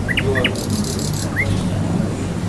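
Bird chirping: a quick run of short rising chirps at the start, a brief high buzzy trill in the middle and one more rising chirp later, over a steady low hum.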